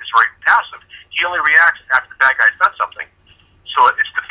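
A man talking over a telephone line, with a brief pause about three seconds in.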